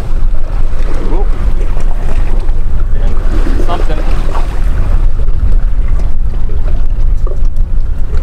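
Wind buffeting the microphone on an open boat at sea: a loud, steady low rumble, with faint snatches of voices under it.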